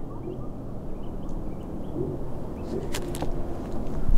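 Outdoor wind noise rumbling on the microphone, with a few faint short chirps in the first half and a couple of sharp clicks about three seconds in.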